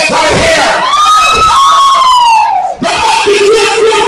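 Wrestling crowd shouting and cheering. One long drawn-out yell rises and falls in the middle, and a held shout follows near the end.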